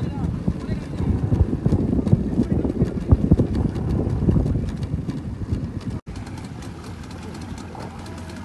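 Fishing crew's voices calling out across the water over loud, irregular low thumping and buffeting on a small boat at sea. About six seconds in the sound cuts off abruptly and gives way to a quieter, steadier background.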